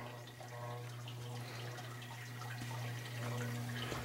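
Low, steady hum of a motorized rotating drying wheel turning bars of freshly painted jig heads.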